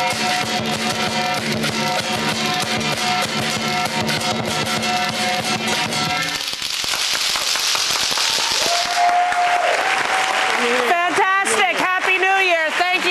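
Lion dance percussion, drum with crashing cymbals and gong, playing a rhythm that stops about six and a half seconds in. Applause and cheering follow, with a long held call and then a person speaking near the end.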